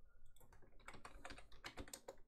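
Faint typing on a computer keyboard: a quick run of keystrokes starting about half a second in.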